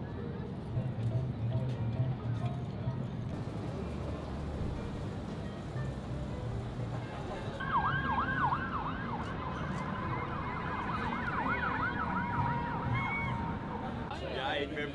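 Distant emergency-vehicle sirens rising from the city streets, yelping in fast up-and-down sweeps from about eight seconds in, with a steady held siren tone joining them. Under them runs a low city rumble.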